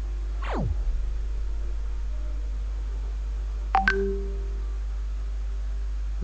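Synthesized sound effects from an educational animation: a quick falling pitch sweep just under a second in, then a sharp click about four seconds in followed by a short held low tone lasting about a second, over a steady low hum.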